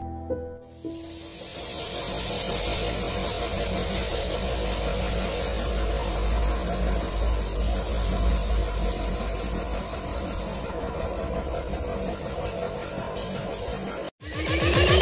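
Steady hiss of a compressed-air spray gun misting ceramic coating onto car paint, over a low rumble. The hiss starts about half a second in and thins out near the end.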